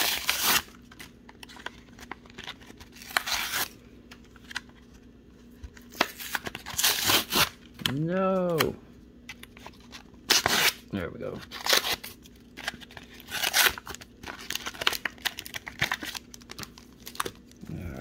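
The card backing of a plastic blister pack of trading cards being torn and peeled open by hand, in repeated bursts of tearing and crinkling. About eight seconds in there is a brief hummed voice sound that rises and falls in pitch.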